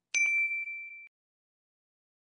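Notification-bell "ding" sound effect as the bell icon of a subscribe animation is clicked: one bright ring with a few light ticks under it, fading out within about a second.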